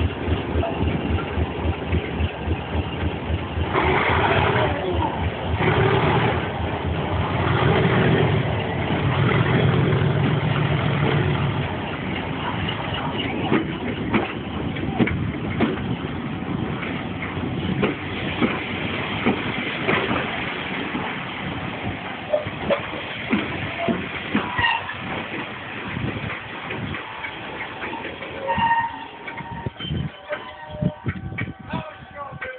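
Two Class 37 diesel-electric locomotives, 37194 and 37901, working hard as they pull away with a passenger train, their engines loud for the first dozen seconds as they pass. After that the coaches roll by at lower level with a run of sharp clicks from the wheels over the rail joints.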